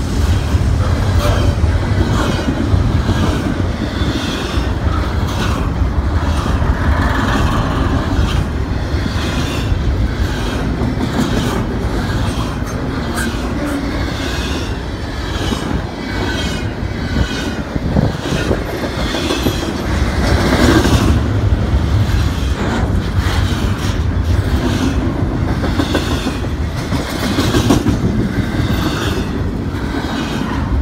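Double-stack container well cars of a BNSF intermodal freight train passing at speed: a loud, steady rumble of steel wheels on rail with repeated clickety-clack over the rail joints.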